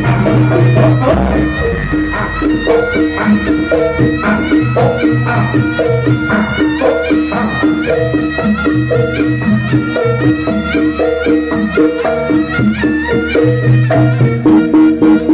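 Live East Javanese jaranan gamelan music: a reedy slompret shawm plays a sustained, bending melody over kendang drums, pitched metallophone notes and a recurring low gong tone, with dense, driving percussion.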